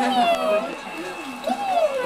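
A toddler's high-pitched, drawn-out vocal sounds: two long wordless calls, each sliding down in pitch.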